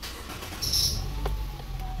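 Nissan Tiida's engine being started with the key: a short high squeak about half a second in as it catches, then a low steady idle.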